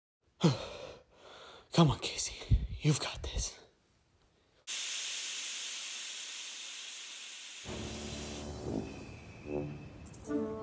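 A few sighs and breaths in the first seconds, each falling in pitch. Then a steam locomotive's hiss of escaping steam starts suddenly and holds steady, fading slowly, with soft music coming in near the end.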